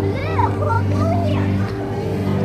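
High-pitched children's voices calling out briefly in the first half, over steady background music with sustained low notes.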